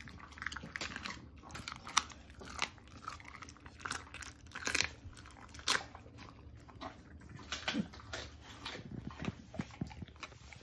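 Norwegian Elkhound crunching and chewing a raw chicken leg, its teeth cracking the bone in irregular sharp crunches.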